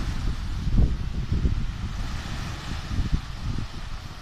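Wind buffeting the microphone in uneven gusts, with the sea washing softly on the shore underneath.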